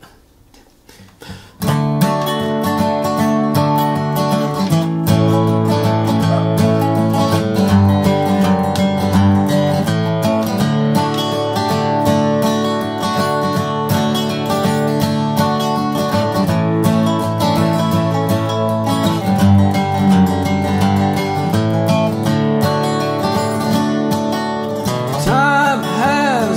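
Acoustic guitar strumming and resonator guitar picking together in an instrumental intro, coming in suddenly about two seconds in after a short quiet. A man's voice begins singing just before the end.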